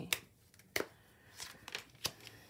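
Tarot cards being handled: two sharp card snaps, one at the start and one a little under a second in, then a few lighter ticks near the end as a card is drawn from the deck and laid onto the spread.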